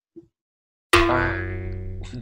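A sound effect added in editing: a single twangy, ringing note strikes suddenly about a second in, holds a steady pitch and slowly fades.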